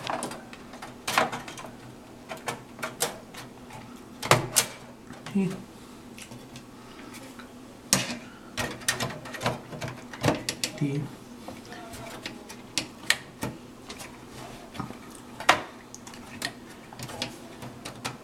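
Expansion card being fitted back into a slot of a steel PC case: an irregular string of sharp metallic clicks and knocks from the card's bracket against the case, the loudest about four, eight and fifteen seconds in.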